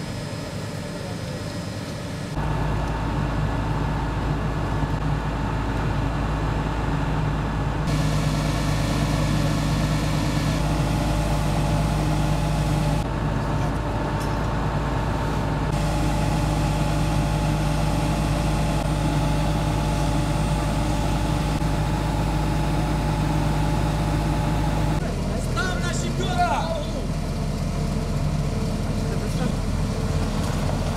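Diesel engine of an asphalt paver running steadily at a road-paving site. Toward the end there is a brief high wavering squeak.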